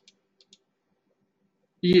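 A few light computer mouse clicks in quick succession as a text cursor is set between the letters of a word on screen.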